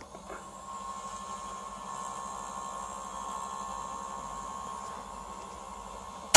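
Sanyo VTC9300P Betamax VCR fast-forwarding a cassette: the tape transport winds the reels with a steady whir and a thin, even whine.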